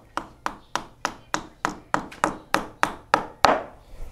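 Hammer striking a nail at a wall in quick, even blows, about three a second, each with a short ring; the last blow near the end is the hardest.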